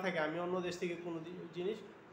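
Speech only: a man lecturing in Bengali, his voice trailing off near the end.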